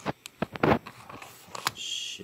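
Handling noise close to the microphone: a few soft clicks, one louder about two-thirds of a second in, and a short rustle near the end.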